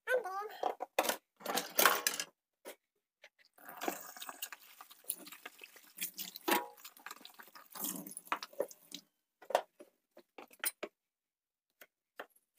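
Peeled green papaya being rinsed and handled at a kitchen sink: water runs for several seconds in the middle, then a few short knife clicks on the cutting board near the end as slicing begins.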